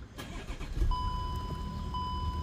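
Volkswagen ParkPilot parking-sensor warning starting about a second in as one steady, unbroken high tone. The continuous tone is the signal that an obstacle is very close. Under it is the low hum of the idling engine.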